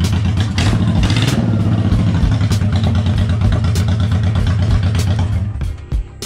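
1997 Honda VT1100 Shadow's 1100 cc V-twin engine running steadily, then cutting off sharply just before the end.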